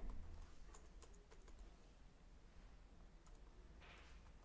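Faint typing on a computer keyboard: scattered keystroke clicks, bunched in the first second and a half, then sparser.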